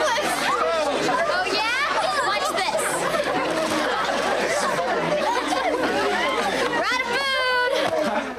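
A crowd of teenagers talking and shouting over one another at a party, many voices at once; one voice lets out a long high shout near the end.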